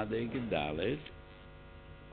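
Steady electrical mains hum in the microphone and sound system, left on its own after a brief stretch of a man's voice in the first second.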